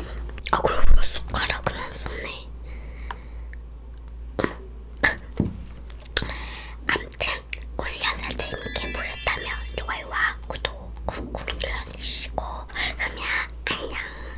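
A child whispering close to the microphones, with many sharp mouth and lip clicks. Near the start come sips and swallows from a small juice carton.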